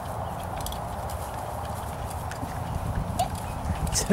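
Hoofbeats of a horse moving away across grass turf.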